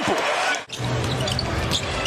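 Basketball game sound in an arena: a ball being dribbled on the hardwood court over a steady crowd din. The sound breaks off for a moment about two-thirds of a second in, then resumes.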